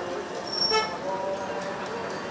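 Street traffic ambience with a short car-horn toot about three-quarters of a second in, the loudest moment, over background voices.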